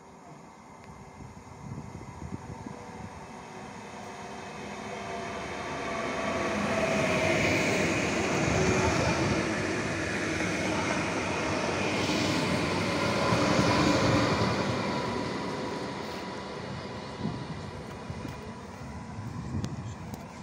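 Koleje Dolnośląskie electric multiple unit passing along a station platform: the rumble and rattle of its wheels on the rails build as it approaches, are loudest for several seconds in the middle as it goes by, then fade as it moves off.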